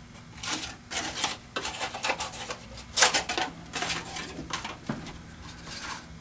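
Scissors cutting through a styrofoam plate: a string of irregular crunching, scraping snips, the loudest about three seconds in.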